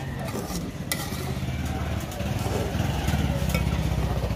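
A metal spoon stirs and scrapes a thick fish-and-egg mixture in an aluminium saucepan, with a sharp clink about a second in. A low engine rumble grows louder from about two seconds in.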